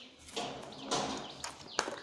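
Children's board books being handled by hand: two brief rustling scrapes of the covers, then a sharp tap a little before the end.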